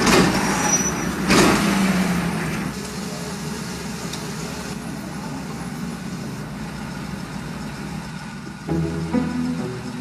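Street traffic sound: a vehicle goes by in the first two seconds, then a steady low traffic noise. String music comes in about nine seconds in.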